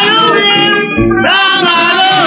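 A Burmese song sung with plucked-string instrumental accompaniment, played from a 1939–40 shellac 78 rpm record. The sung phrases bend and hold over steady accompanying notes.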